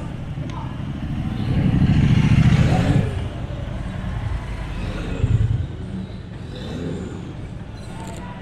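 Motorcycle engines riding past at low speed, one after another. A deep rumble swells loudest as a bike passes close about two seconds in, and a shorter burst of throttle comes about five seconds in.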